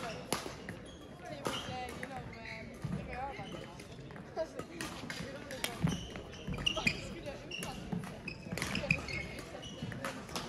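A badminton rally in a sports hall: rackets hit the shuttlecock back and forth, with sharp impacts and footfalls on the court floor, and voices in the background.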